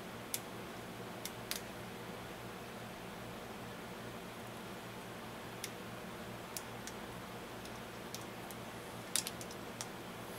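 Small flush cutters snipping the plastic petals off a 20-gauge shotshell wad: scattered sharp snips, about nine in all, two close together near the end, over a low steady hum.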